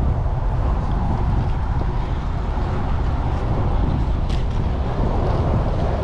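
Steady wind rumble on a bike-mounted GoPro's microphone while cycling, mixed with traffic noise from the adjacent highway.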